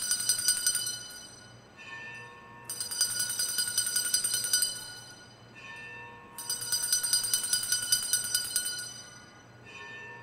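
Altar bells rung at the consecration, in three rapid jingling peals of about two seconds each, with a softer, lower ringing tone between the peals.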